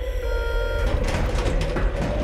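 Steady low drone of a military transport aircraft's cabin with a brief electronic tone in the first second. From about a second in comes a rush of wind noise as the rear cargo ramp opens for the jump.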